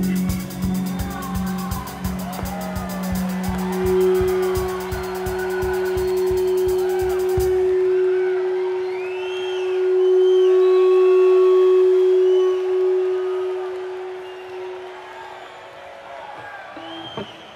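Live rock band ending a song: the drum beat stops about halfway through, leaving one long held note that swells and then fades near the end. Over it the crowd cheers and whoops.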